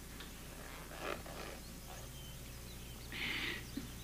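Faint rustling of boot laces being worked loose, over quiet room tone, with a short soft hiss near the end.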